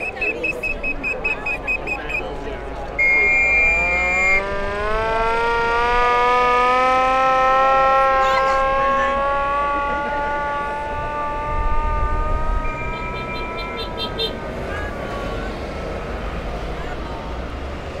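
A siren winding slowly up in pitch and back down again over about ten seconds, over a low traffic rumble. Shrill high-pitched tones sound near the start, trilled and then held, and come again briefly about thirteen seconds in.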